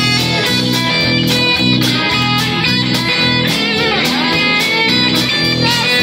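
Live rock band playing an instrumental passage: electric guitars over bass and a steady drum beat, with a few bent guitar notes near the end.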